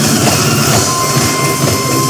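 Loud Korean traditional percussion music: small sogo hand drums beaten over a dense, bright clatter. A steady high tone comes in about a second in.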